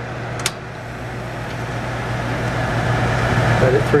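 A sharp click about half a second in as the thermostat is turned on, then the Cavalier Coke machine's condensing unit compressor starts and runs with a low hum that slowly grows louder, over the steady whir of the evaporator fan.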